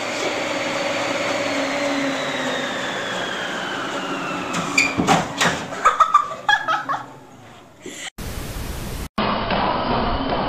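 Home treadmill running: a steady motor-and-belt hum with a faint whine that slowly falls in pitch. A cluster of knocks and thuds comes about five to six and a half seconds in, as a child is thrown off into the corner behind it. A short burst of hiss follows near the end.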